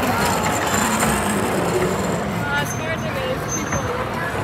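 Ride-on kiddie train running along its narrow rail track: a steady noise of the ride with a thin high whine over the first second and a half. Children's voices are faint beneath it.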